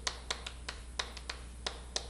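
Chalk writing on a chalkboard: a string of light, sharp taps and short scratches as the strokes of characters are drawn.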